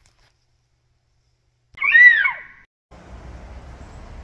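A single short cat meow, its pitch rising then falling, about two seconds in. After it, a steady low background rumble begins near the end.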